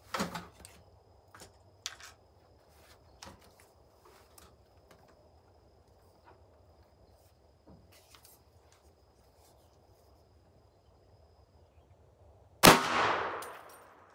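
A single rifle shot from an AR-15 in .300 Blackout firing a Hornady 190-grain Sub-X load, near the end, its report echoing and dying away over about a second. Before it, a clack and a few faint clicks of the rifle being handled.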